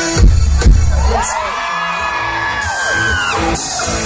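Live band amplified through a PA: two heavy drum hits, then a long shouted call that rises and falls in pitch over a held chord. It is call-and-response shouting between the singer and the crowd.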